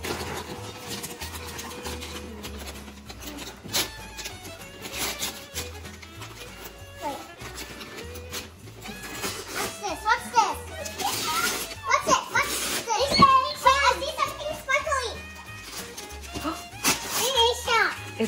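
Gift-wrapping paper crinkling and tearing as a child unwraps a present, with young children's voices and squeals in the second half.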